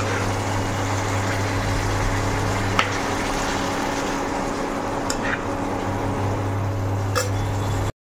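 Fish curry simmering and sizzling in a thick, oily masala gravy in a wok, with a few light clicks of a metal spatula against the pan as the pieces are turned, over a steady low hum. The sound cuts off abruptly just before the end.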